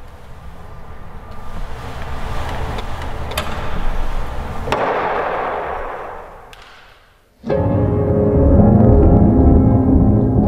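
A noisy whooshing swell builds for several seconds and dies away. About seven and a half seconds in, piano music starts abruptly, with deep low notes under the chords.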